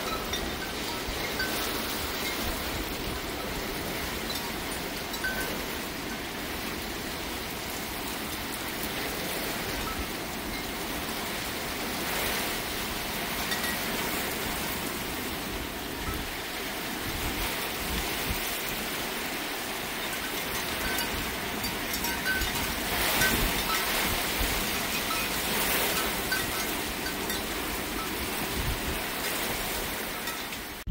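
Heavy thunderstorm rain pouring down steadily, swelling louder in a couple of gusts. A hanging metal tube wind chime rings with scattered soft high notes.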